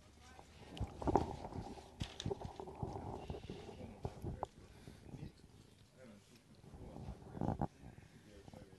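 Indistinct voices and calls, from about a second in to four seconds in and again briefly near the end, with a few light knocks.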